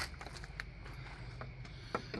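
A few faint clicks and light taps as a long LED stick light is handled and moved down among engine parts, over a low steady hum.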